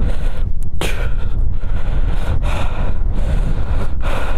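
Wind buffeting the microphone on a moving motorcycle in a snowstorm: a loud, steady low rumble with brief gusty rushes, the strongest about half a second in.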